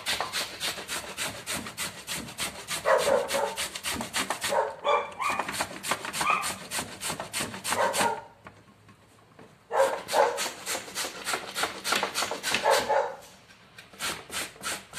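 Green papaya, peel and all, rasped on a stainless steel box grater in quick, even strokes, about four or five a second, with a pause of a second and a half a little past the middle and another near the end. Several short pitched calls, like barks, sound over the grating.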